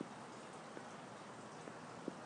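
Faint steady hiss of room tone in a pause of a voice-over recording, with a few small faint ticks.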